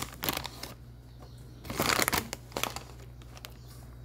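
Spoonfuls of cornstarch being tipped and scraped off a spoon into an empty cooking pot: short dry scraping and crunching of the powder against spoon and pan, loudest about two seconds in.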